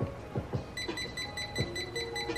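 An essential oil diffuser's built-in clock giving a rapid string of short electronic beeps while its button is held to scroll the time setting, with a few soft knocks from handling the unit.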